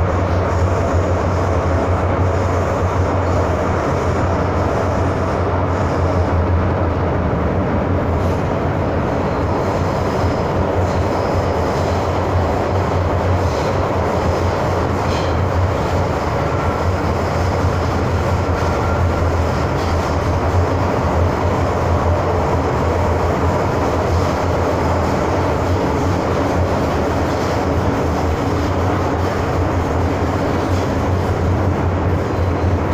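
MTR M-Train electric multiple unit heard from inside the car while running between stations: a loud, steady rumble of wheels on rail and running gear with a strong low hum.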